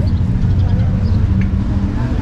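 Low, steady rumble of city street traffic, with a vehicle engine running close by.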